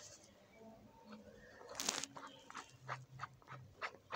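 Faint clicks and taps of a plastic makeup stick being handled and turned in the fingers, with one sharper click about two seconds in.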